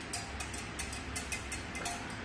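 Wire whisk clinking and scraping against the side of a glass saucepan while a pudding mixture is stirred: a quick, irregular run of light ticks over a steady low hum.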